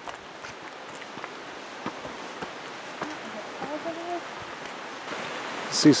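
Footsteps on a dirt forest trail over a steady hiss of rushing water from a nearby waterfall, with scattered light ticks and a faint brief voice-like sound a little past the middle.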